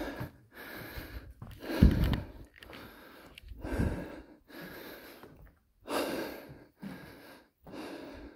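A person breathing hard close to the microphone, about one loud breath a second with short pauses between them, the panting of someone out of breath after a climb.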